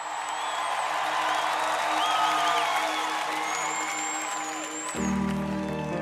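Opening of a live worship song: a crowd's cheering and applause with a few whistles fades in over a held keyboard note, and sustained keyboard chords come in about five seconds in.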